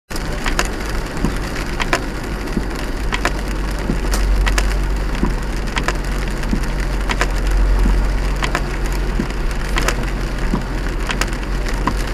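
Car driving on a rain-soaked motorway, heard from inside the cabin: a steady low road rumble with tyre hiss on the wet surface, and irregular sharp ticks of rain striking the windscreen.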